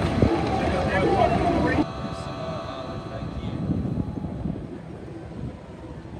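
A man laughing over crowd chatter; about two seconds in the sound drops suddenly to a quieter, steady drone of distant engines under outdoor crowd noise.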